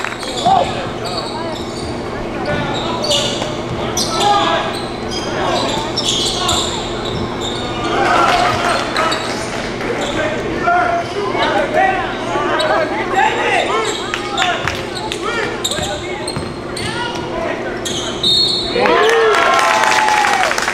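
Live basketball game sound in a large echoing gym: a ball dribbling and bouncing on the hardwood court, short sneaker squeaks, and players calling out. A steady low hum runs underneath.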